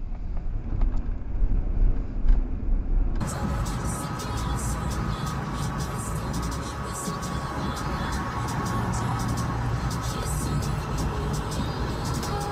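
Dashcam audio of a car driving: low road and engine rumble. About three seconds in it cuts to steady highway road noise.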